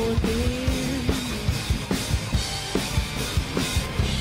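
A rock band playing live without vocals: a drum kit keeps a steady beat of bass drum and snare hits, about three to four a second, under electric guitars and bass.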